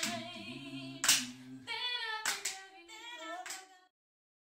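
A cappella gospel quartet singing in harmony while clapping, with a clap about every second. The low voice drops out partway through and the higher voices fade out near the end.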